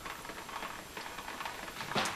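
Red pressure release valve on the cap of a 20BB whole-house water filter housing held open, letting out a steady hiss as the residual pressure in the housing is vented before the sump is removed.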